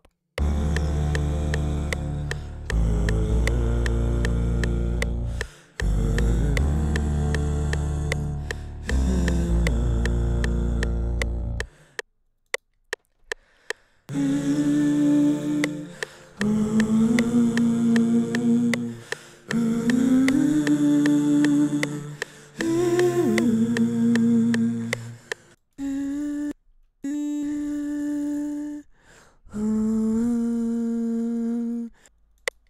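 A beat built entirely from processed voice plays for about twelve seconds: layered vocal chords over a deep bass with beatboxed hi-hat clicks. After a short pause, a young man hums single held notes into the microphone one after another, some sliding up into pitch, as he records harmony layers to fill out the chords.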